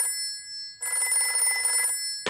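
Cartoon sound effect of an old-fashioned telephone ringing. One ring ends just as the sound begins, and a second ring, about a second long, starts a little under a second in.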